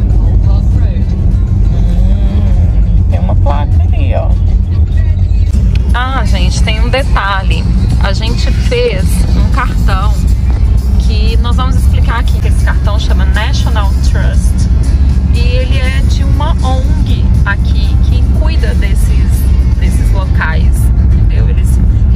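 Steady low rumble of a car driving on a country road, heard from inside the cabin, under a speaking voice and background music.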